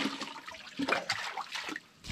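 Water splashing and trickling as muddy pond water is poured from a plastic pitcher into a plastic basket set over a bucket, with a few short splashes, dying away near the end.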